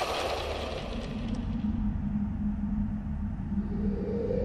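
Low rumbling drone from a film soundtrack, with a steady low hum and a higher tone swelling in near the end.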